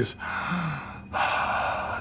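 A man imitating a really deep sigh: a long, breathy rush of air that changes about a second in, with almost no voice.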